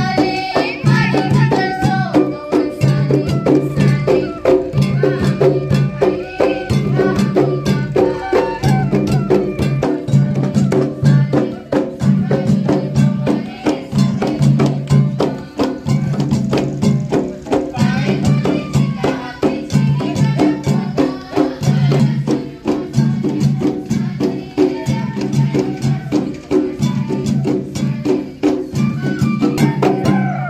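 Live folk music: women singing into a microphone over a bamboo flute melody, with a steady rhythmic beat from drums and rattling bamboo percussion.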